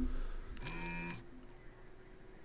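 A short, faint buzz of a desoldering tool's vacuum pump, about half a second long just after half a second in, as it sucks molten solder off a joint on the radio's circuit board.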